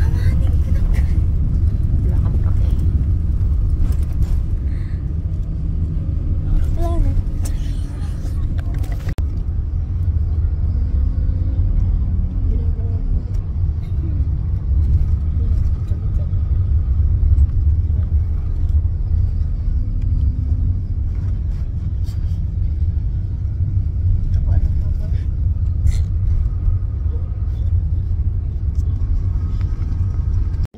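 Steady low rumble of a moving bus, engine and road noise heard from inside the passenger cabin.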